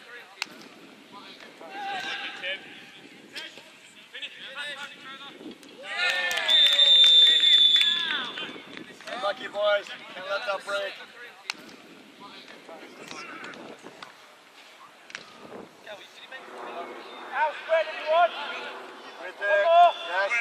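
Footballers shouting across a pitch on and off, loudest about six seconds in, when a long high whistle blast sounds through the shouts for about a second and a half.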